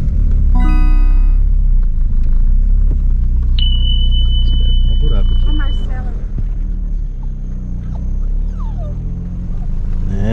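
Steady low rumble of a car heard from inside the cabin while driving slowly. A short tone with overtones sounds about half a second in, and a single steady high beep lasts about two seconds in the middle.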